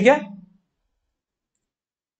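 A man's voice says one short word, then dead digital silence, with no room sound at all.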